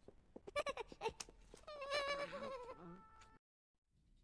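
High-pitched, bleat-like cartoon voice sounds, with a quick run of clicks near the start, cutting off abruptly about three and a half seconds in.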